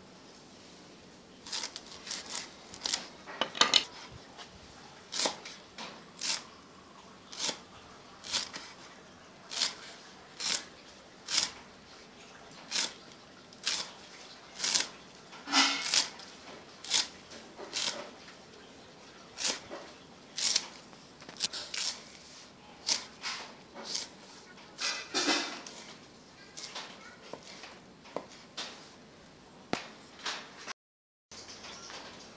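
A kitchen knife chopping a bundle of pandan leaves on a wooden chopping board: a steady series of separate sharp chops, a little more than one a second, beginning about a second and a half in.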